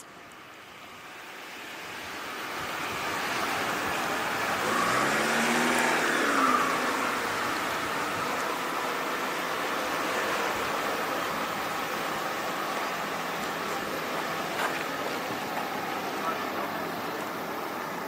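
A hatchback car pulling away and driving off through a slalom course of cones: its engine rises and falls in pitch once around five to six seconds in, over a steady rushing noise that builds through the first few seconds.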